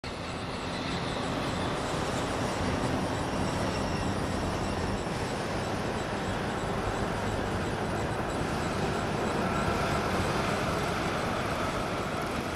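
Dense road traffic heard as a steady, unbroken wash of noise.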